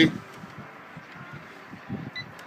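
A man's voice finishing a word, then faint steady background noise with no distinct sound in it.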